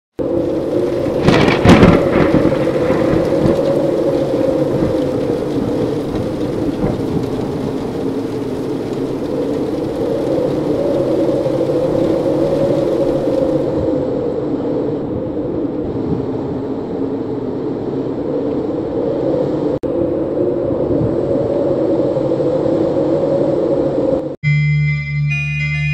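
Storm sound effect: a loud thunderclap about a second and a half in, then a steady rushing rain-like noise with a deep rumble under it.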